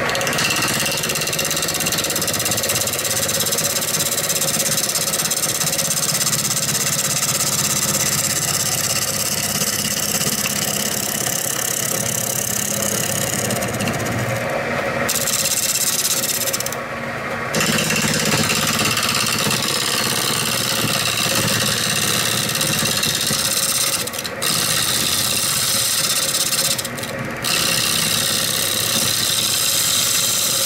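Gouge cutting into a spinning cherry platter blank on a wood lathe, a steady rough shearing hiss over the lathe's hum: an aggressive roughing cut taking the weight off the blank. The cutting sound breaks off briefly a few times in the second half.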